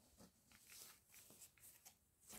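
Near silence in a small room, with a few faint, short rustles of material being handled.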